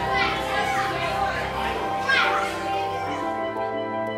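Several children's voices calling out over background music that holds steady notes. The voices die away a little after three seconds in, leaving the music.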